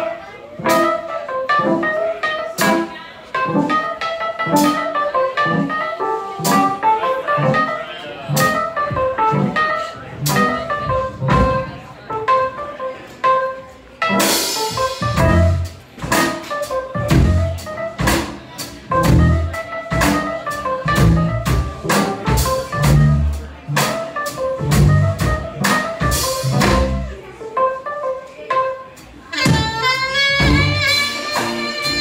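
Live jazz band playing an instrumental: a keyboard in piano voice carries a melodic line over drums. About halfway through, the full band comes in louder and heavier.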